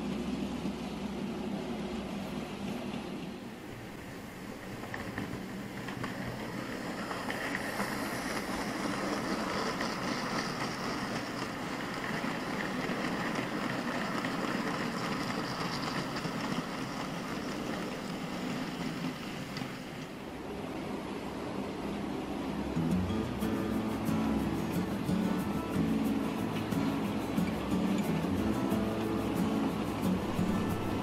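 OO gauge model goods train running on the layout: a steady whirr and rumble of the model's wheels on the rails, louder in the last third, with background music underneath.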